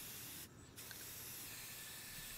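Aerosol spray-paint can spraying black paint onto a glass panel, a steady hiss that stops briefly about half a second in, then starts again.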